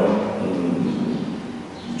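A man's voice in a large room, with drawn-out hesitation sounds and indistinct words, dipping in loudness near the end.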